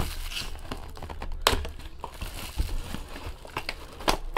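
Hands opening and handling a cardboard trading-card box: rustling and crinkling with a few scattered sharp clicks and knocks, the sharpest about one and a half seconds in.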